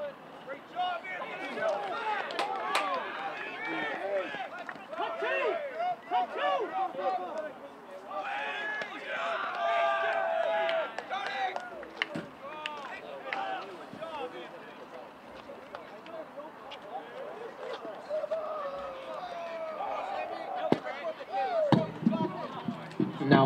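Players and spectators at a baseball game shouting and cheering over a play in which a run scores, loudest about halfway through with a long drawn-out yell. A few sharp knocks are heard among the voices.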